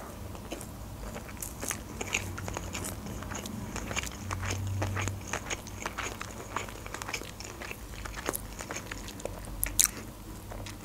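Close-miked chewing of a nori-wrapped sushi roll: a steady run of short mouth clicks and small crunches as the roll is bitten and chewed.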